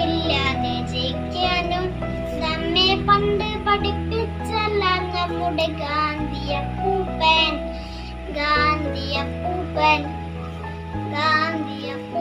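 A young boy singing over an instrumental backing track, with held bass chords that change every two seconds or so.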